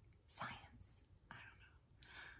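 Faint breathy whispering from a woman: a few short, soft bursts of breath and murmured sounds.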